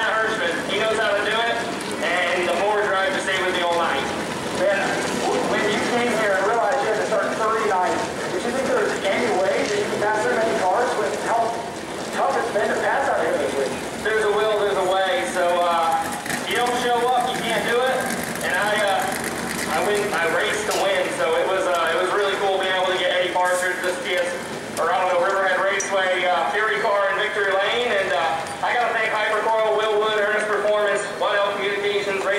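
Speech: a man talking steadily in an interview on a handheld microphone, with only brief pauses.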